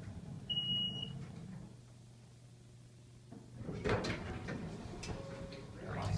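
Otis Series 1 hydraulic elevator in motion: a low steady hum from the car's ride and pump motor, with one short high beep about half a second in. The hum drops in two steps as the car slows and stops, and clatter and rustling follow in the last two seconds.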